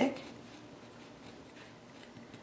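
A pencil writing a word on paper, faint and steady, with no sharp knocks.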